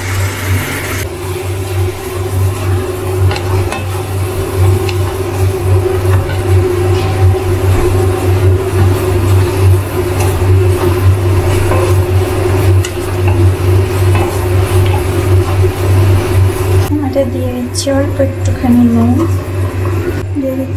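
Onions and capsicum sizzling in sauce in a wok as they are stirred with a spatula, over a steady low hum. The higher sizzle thins out near the end.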